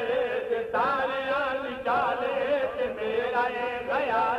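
A man's voice chanting a mourning lament (masaib) in long, wavering held notes, with no clear words, a new phrase starting about a second in and again near the middle.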